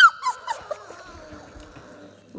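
Young puppies whimpering in short, high squeals that die away about half a second in, followed by faint licking and mouthing sounds.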